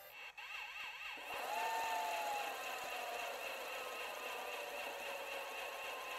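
Quiet synthesized transition tones. A fast warbling tone runs through the first second, then a held tone slowly bends downward, over a steady high whine and a thin hiss.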